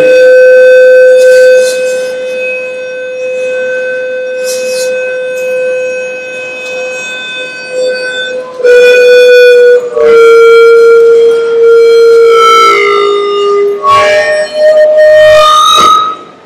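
Loud public-address feedback from the hall's sound system: a sustained tone held for about eight seconds, then jumping between several different pitches. It is put down to interference between the different sound systems in the hall.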